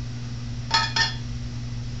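Two short ringing clinks about a quarter second apart, a hard object knocking against a container, over a steady low hum.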